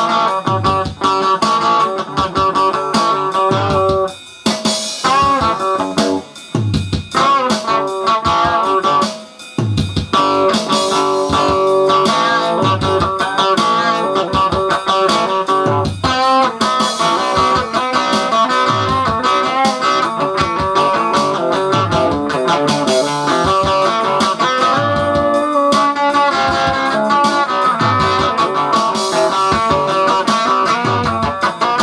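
Electric guitar playing rock over a backing with a low beat recurring every second or two, with brief breaks in the playing about four and nine seconds in.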